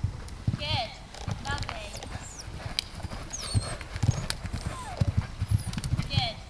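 A horse cantering and jumping on a soft arena surface: dull hoofbeats in uneven groups. Short whistled bird calls sound above them.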